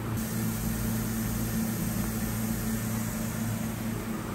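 Haas VF-2SS vertical machining center running with its spindle turning at about 500 rpm and no cutting load: a steady hum.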